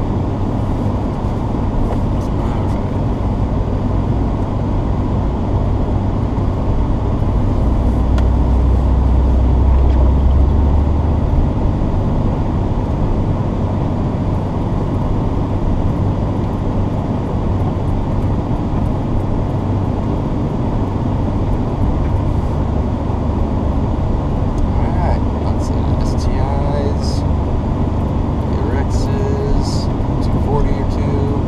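Datsun 810 Maxima's engine and tyres droning steadily, heard inside the cabin as the car rolls slowly over wet pavement. The low rumble swells for a few seconds about a third of the way in.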